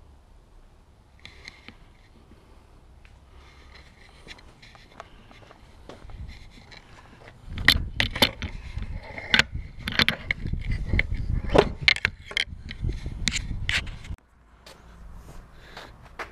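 Close rubbing, scraping and clicking handling noise, loudest and busiest from about seven seconds in until it stops suddenly near fourteen seconds, as a six-pack of cans is strapped to a bike with bungee cords.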